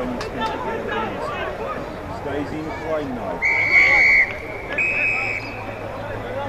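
Spectators chattering and calling out, with a whistle blown in two steady blasts past the middle: the first, and loudest, lasts under a second, then comes a shorter, slightly higher one.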